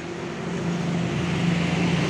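A motor vehicle engine running with a steady low hum, growing slightly louder.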